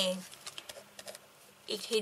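Marker pen on paper: a few faint, quick ticks and scratches as a cross is drawn.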